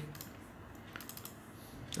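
Faint clicks of a computer keyboard and mouse: a few scattered clicks, with a short cluster about a second in.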